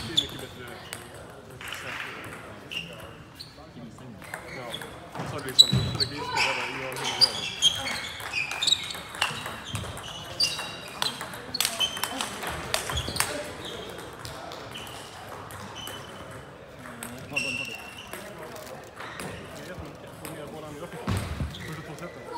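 Table tennis balls clicking on tables, bats and the floor around a sports hall, with scattered short shoe squeaks on the hall floor and voices in the background.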